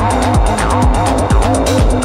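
Techno music: a steady kick drum under fast hi-hats and a repeating synth line of short notes that swoop down in pitch.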